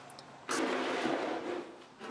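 A steady scratchy rasp of sandpaper on the tank's painted and body-filled surface. It starts suddenly about half a second in and fades out after about a second.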